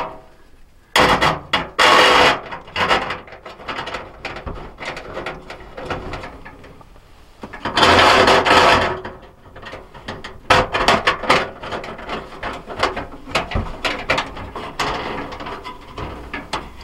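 Quarter-inch steel threaded rods being screwed by hand into T-nuts in a sheet-metal camp stove base, with metal-on-metal scraping and rattling, a little noisy. There are long rasping scrapes about a second in and again around eight seconds, then a run of quick clicks and rattles.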